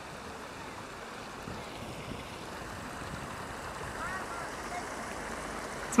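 Steady rushing of water running down a stone cascade fountain over rocks.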